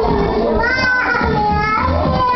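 A young child's high-pitched voice, vocalizing and squealing in drawn-out calls that rise and fall in pitch.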